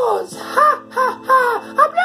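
A high-pitched falsetto puppet-character voice makes short arched sing-song notes, several a second. Steady background music plays underneath.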